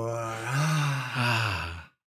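A man's long, drawn-out voiced sigh held on one low pitch. It cuts off abruptly to dead silence near the end.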